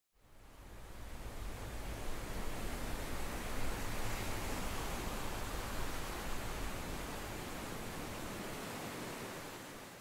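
A steady rushing noise with a low rumble beneath it, fading in over the first second or so and beginning to fade out near the end.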